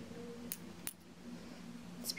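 Two light clicks, about half a second apart, from a glass perfume bottle being handled, against a faint low room hum.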